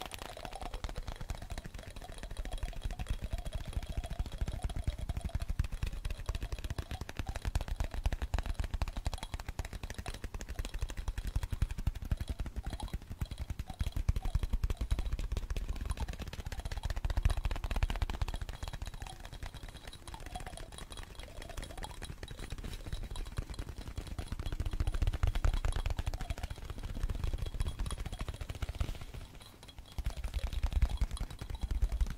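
Layered ASMR finger tapping right up against the microphone: a dense, fast run of fingertip taps and clicks with heavy low thuds, swelling louder around the middle and again near the end.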